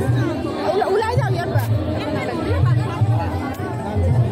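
Crowd chatter, many voices talking over one another close by, over music with a low, repeating beat.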